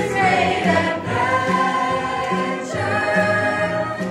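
A mixed high school choir singing a show tune in harmony, over an accompaniment with a steady, pulsing bass.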